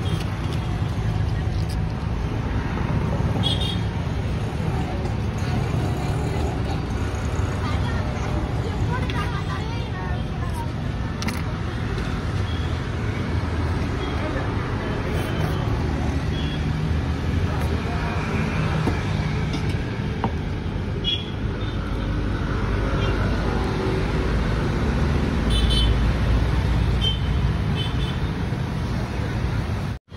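Busy street background: a steady rumble of road traffic with indistinct voices, and a few short horn toots.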